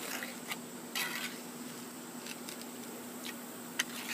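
Steel trowel scraping and tapping wet gravel-mix concrete level in a cinder block's core: a few faint, short scrapes and a sharper tick near the end, over a faint steady hum.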